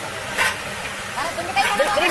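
A steady engine-like drone runs under the scene, with a single sharp knock about half a second in; from just past a second, people call out in short, rising and falling shouts.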